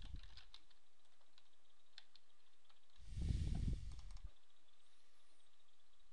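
Computer keyboard keystrokes and mouse clicks, a few sharp clicks scattered through. About three seconds in comes a louder, low, muffled noise lasting just over a second.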